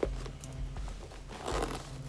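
Hands handling and pressing shut a packed quilted leather Gucci Mini Marmont bag: faint rustling and crinkling, with a sharp click at the start.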